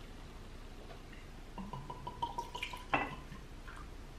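Whiskey poured from a glass bottle into a glass tumbler: a short run of glugs starting about a second and a half in, stopping with a light knock about three seconds in.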